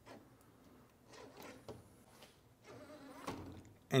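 Faint handling noises: soft rustling with a few light clicks.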